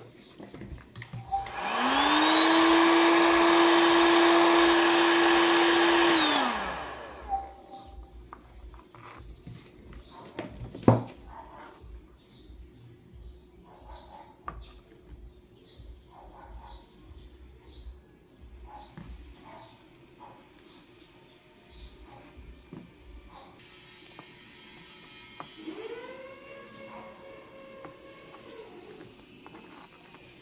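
A small electric motor spins up, runs steadily for about five seconds and winds down, with a sharp click a few seconds later and light ticks of handling. Near the end a fainter, shorter motor run at a higher pitch.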